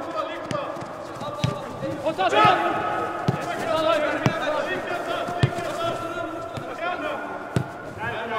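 Footballers' shouts and calls, loudest about two and a half seconds in, with the ball being kicked about seven times in short sharp thuds. The sound echoes in a large indoor football hall.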